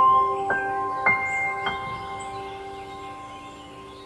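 Background music: a rising run of chime-like notes struck about half a second apart, which then ring on and slowly fade.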